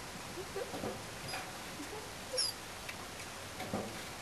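A small animal's short squeaks and whimpers, several soft ones and a sharper, higher squeak a little over halfway through.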